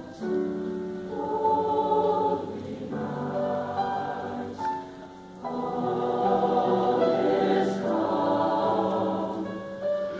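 High school choir singing in parts, holding long chords with short breaks between phrases. About five seconds in the singing drops quieter for a moment, then swells back fuller and louder.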